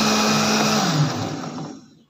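Electric countertop blender running with a jar of milky apple smoothie, then switched off about a second in, its motor tone falling in pitch as it winds down and dies away.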